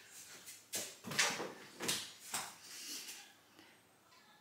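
A few soft knocks and rustles of someone moving about and handling things close to the microphone, the loudest a little over a second in.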